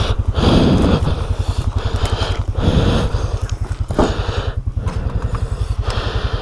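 A Can-Am Outlander 700 ATV engine left idling, a steady pulsing rumble, under footsteps crunching and branches brushing as someone pushes through dry bush on foot.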